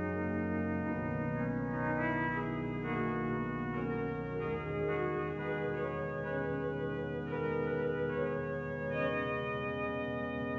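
Organ playing sustained chords that change about every second or so over deep held bass notes; the bass shifts about a second in and again about five seconds in.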